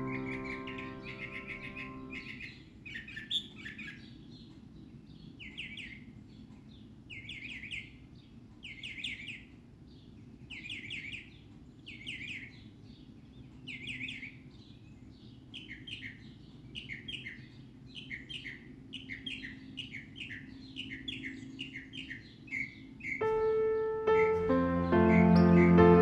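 A songbird singing in short, bright, repeated phrases, one every second and a half to two seconds, coming more closely together in the second half. Soft piano music fades out over the first two seconds and comes back about a second before the end.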